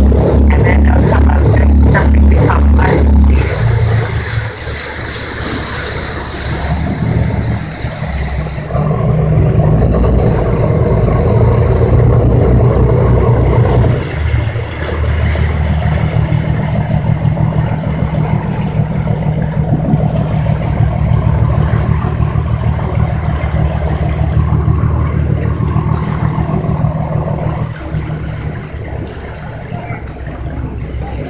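Boat engine running steadily while underway, with water rushing and splashing along the hull and wind noise on the microphone; the engine sound eases off briefly about 4 seconds in and picks up again near 8 seconds.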